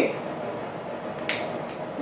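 A single sharp finger snap about a second and a half in, over quiet room tone.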